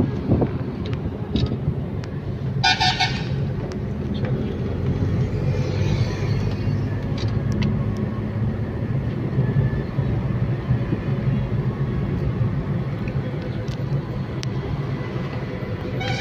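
Steady low rumble of a car driving, heard from inside the cabin. A short horn honk sounds about three seconds in.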